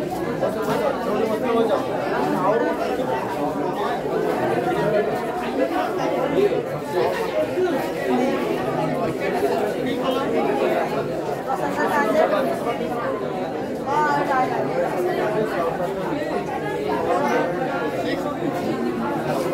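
Indistinct chatter of a group of people talking at once, many overlapping voices with no single speaker standing out.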